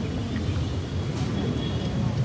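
Steady low outdoor rumble, with a faint murmur of voices in a pause before the band plays.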